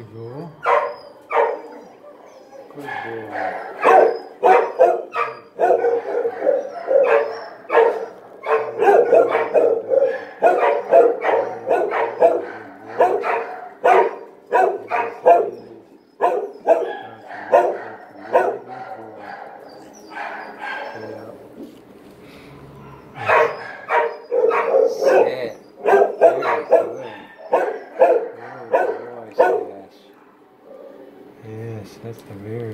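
Shelter dogs barking over and over, a rapid run of short barks that keeps going with a brief dip about halfway and a quieter stretch past two-thirds through.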